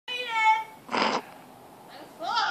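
A high, whiny squeal of strain from a person, then a short breathy grunt about a second in.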